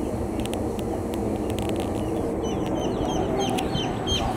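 Rouen ducklings peeping: a quick run of short, high-pitched peeps that starts about halfway through, over a steady low background rumble.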